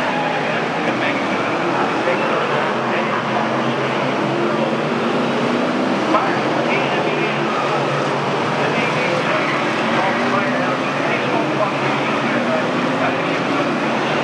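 Several F1 stock car V8 engines running hard as a pack of cars laps the oval, a steady, dense racket, with indistinct voices mixed in.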